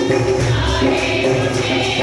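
Group of voices singing a Christian worship hymn together over instrumental accompaniment with a steady beat.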